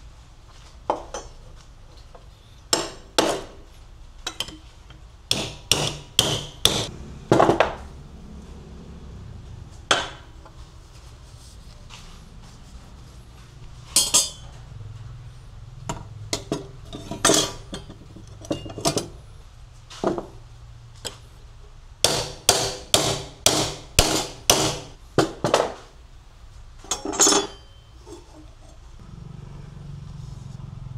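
Hammer striking a flat steel strip to straighten it, in groups of sharp, ringing metallic blows several a second, with pauses between groups.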